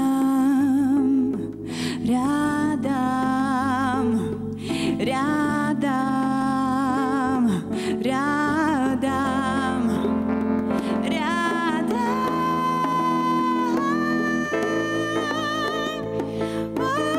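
A woman singing a slow, melancholy jazz ballad live, with a wide vibrato on held notes and short breaths between phrases, then a long held note near the end. Sustained electric keyboard chords accompany her.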